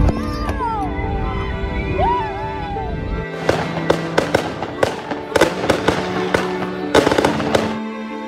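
Background music throughout. For about the first three seconds it plays over the low rumble of a jet airliner rolling on the runway. After a sudden cut comes a quick run of sharp firework bangs and crackles, which stops just before the end.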